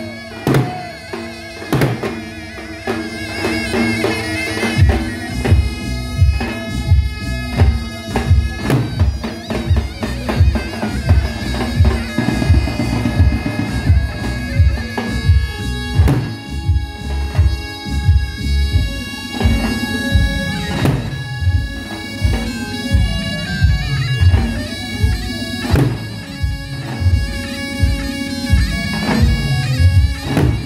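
Davul bass drums beaten with a heavy mallet and a thin stick in a steady dance rhythm, under a shrill reed wind instrument playing a sustained folk melody.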